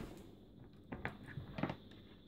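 A few faint, soft taps and knocks from hands handling a laptop, about a second in and again near the end, over a quiet room.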